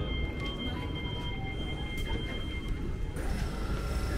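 Train standing at a station platform: a low steady rumble with a thin, steady high whine over it. About three seconds in the sound changes suddenly as it moves to inside the carriage.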